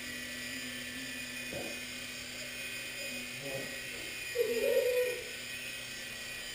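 Blade mCX micro coaxial electric RC helicopter hovering: a steady whine from its small electric motors and rotors, holding a stable hover now that its toilet-bowl wobble is cured. A short, louder wavering sound comes in about four and a half seconds in.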